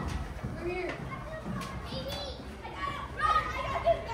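Crowd of children playing, many young voices shouting and calling over one another, with a few louder cries near the end.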